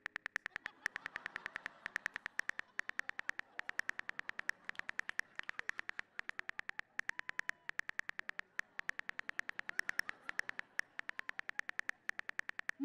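Rapid on-screen phone keyboard clicks, about seven a second, as a text message is typed out, in runs broken by brief pauses.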